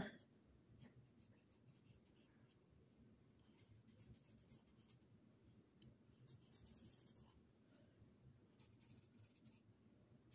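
Faint scratching of a felt-tip marker drawing on watercolor paper, in a few short spells of strokes.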